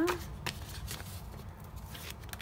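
Paper sticker sheet being handled and moved over a planner page: a few brief crisp paper rustles and taps.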